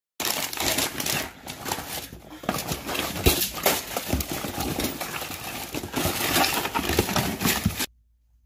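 Close, continuous rustling and crinkling of packaging and handling noise, full of small clicks and crackles, as a hand puppet digs among a packet, a cardboard egg carton and books in a box. It cuts off abruptly just before the end.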